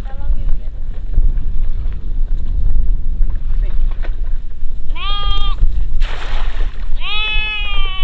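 Sheep bleating twice, about five and seven seconds in, the second call longer, over a steady low rumble of wind on the microphone. Between the two calls, about six seconds in, a cast net lands on the water with a brief splash.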